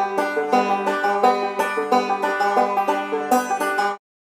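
Banjo playing a fast run of picked notes, several to the second, that stops abruptly.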